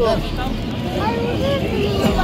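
Voices of people talking nearby, not close to the microphone, over a steady low rumble.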